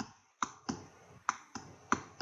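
Clicking at a computer: about six sharp, short clicks, unevenly spaced, roughly three a second, as of keys or buttons being pressed.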